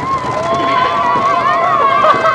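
Roller coaster riders screaming: several voices hold long, high, wavering screams at once, over the low rumble of the ride.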